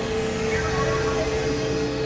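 Experimental electronic drone music: a steady held tone over a dense, noisy texture, with a falling pitch sweep about half a second in.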